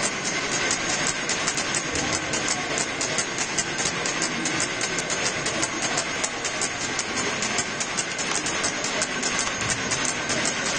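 Hubbub of a large crowd packed into a reverberant church, a steady wash of many voices and movement, with a rapid, even clicking running through it.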